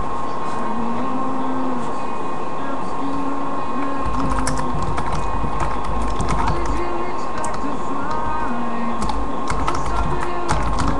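Scattered, irregular key clicks of typing on a computer keyboard, over a steady high-pitched hum. A low rumble comes in about halfway through.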